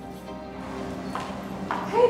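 Background music with steady sustained tones. In the second half come a couple of sharp clicks about half a second apart: footsteps on a hard floor.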